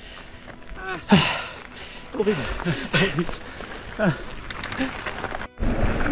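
A few short, indistinct voice sounds over a steady rush of wind and mountain-bike tyres rolling on a gravel track. About five and a half seconds in, the sound drops out briefly, then comes back as a louder low rumble of riding noise.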